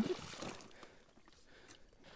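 Water splash from a pike striking a topwater lure at the surface, dying away within about half a second. Near silence follows, with a faint click near the end.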